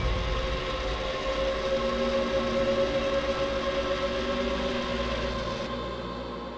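Sustained eerie drone from a horror-film score: several held tones over a low rumble, slowly fading. A faint static hiss lies under it and stops just before the end.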